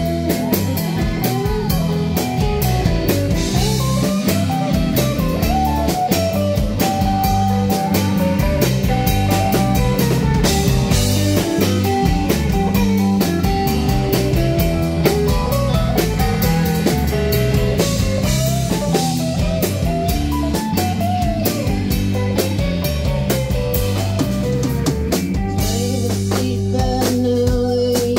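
Live rock band playing an instrumental passage: an electric guitar lead with bending, sliding notes over bass guitar and a drum kit.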